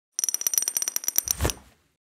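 Logo-reveal sound effect: a rapid run of high ringing ticks, about a dozen a second, ending about a second and a half in with a low hit that fades out.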